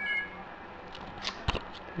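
A short, high electronic chirp from an iPod touch at the start, followed by a few faint clicks and a sharp knock about a second and a half in.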